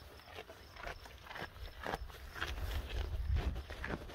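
Goat kids moving about on wooden floorboards, hooves tapping irregularly, while they rustle and nibble leafy greens.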